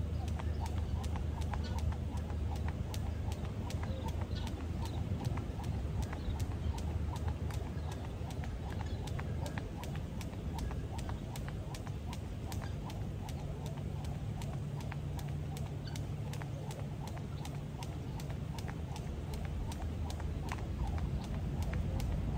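Rope skipping on brick paving: the rope ticks against the ground in a steady rhythm, about two to three strikes a second, over a low steady rumble.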